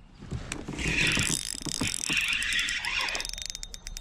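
Spinning fishing reel working as a fish is brought in, with a rapid run of clicks about two and a half seconds in, over a steady hiss.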